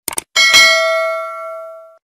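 Sound effect of a mouse double-click followed by a bright bell ding, as on a 'subscribe and ring the bell' animation. The ding rings with several clear overtones, fades over about a second and a half and is cut off near the end.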